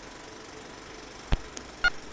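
A steady low hum with two sharp knocks, the second, about half a second after the first, with a short ringing clink.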